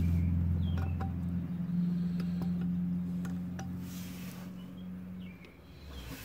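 A steady low hum that slowly fades and stops near the end. Several light clicks sound over it as the powder scale's beam and pan are handled and checked for free movement.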